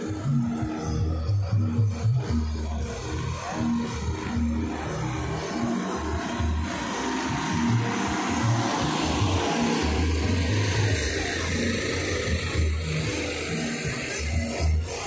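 Music with a heavy, pulsing bass line played loudly through an outdoor sound system's loudspeakers, with a rushing noise swelling over it in the middle.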